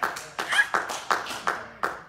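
Scattered handclaps from a few people in a church congregation, sharp irregular claps about four or five a second that thin out near the end.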